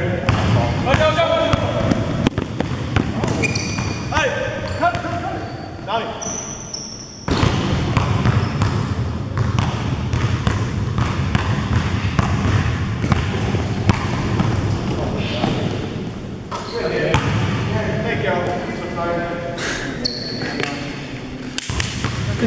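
A basketball being dribbled during a game on a hard indoor gym floor: a run of irregular bounces that echo in the large hall.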